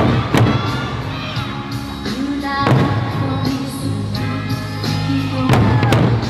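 Eisa drum-dance music: a sung melody over sustained accompaniment, broken by loud unison strikes of the Eisa barrel drums (odaiko) at the start, again a moment later, nearly three seconds in, and near the end.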